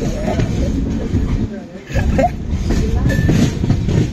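Express train running along the track, heard from outside the side of the coach: a steady, loud rumble of wheels on rail mixed with rushing air, easing briefly just before two seconds in.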